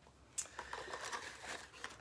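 Packaging crinkling and rustling as it is handled in a box of items, starting about half a second in with a sharp click and continuing as a dense run of small crackles.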